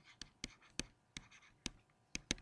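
Stylus tapping and scratching on a tablet screen while handwriting, heard as a faint series of sharp clicks, about six in two seconds.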